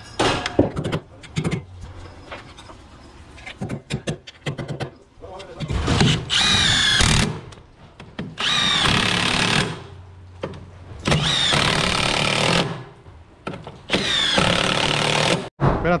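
Milwaukee cordless power driver driving long structural screws through a steel bracket into timber, in four separate runs of about a second and a half each. The motor's whine dips in pitch as each run starts.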